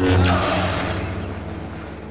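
Two lightsabers clashing and locking: a sharp crackling clash just after the start, fading over about a second and a half into the low buzzing hum of the crossed blades.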